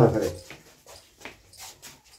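A man's voice in long, drawn-out sounds that trails off about half a second in, followed by faint scattered clicks and knocks.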